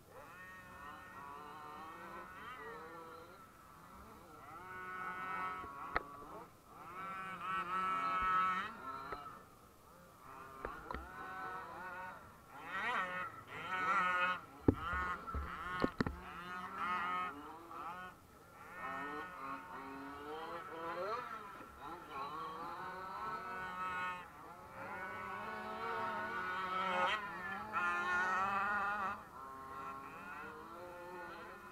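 Small motors of radio-controlled off-road cars buzzing and revving up and down in pitch as the cars go round a dirt track. There are a few sharp knocks about halfway through.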